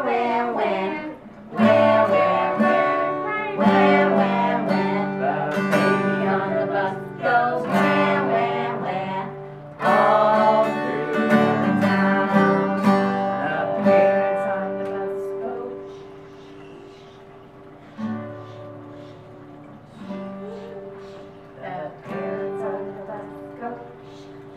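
Acoustic guitar strummed in a steady rhythm as accompaniment to a children's song. It is loud for the first fifteen seconds or so, then drops to soft playing with a few louder strums.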